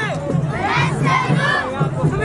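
A large group of young taekwondo students shouting a kihap together. Many overlapping voices are loudest about a second in.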